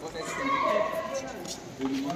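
Men's voices talking in a group, speech only, with one word drawn out about half a second in.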